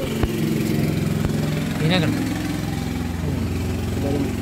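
A motor running steadily with a low hum, and a brief voice sound about two seconds in.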